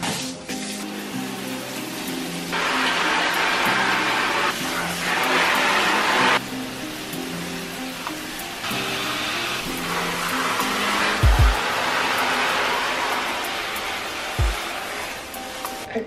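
Shower head spraying water over potted houseplants, a hiss that cuts in and out sharply several times as the spray moves, under soft background music. Two dull thumps come in the second half.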